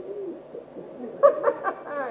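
A man's wordless voice: low, faint sliding sounds, then a quick run of short, louder pitched syllables about a second in.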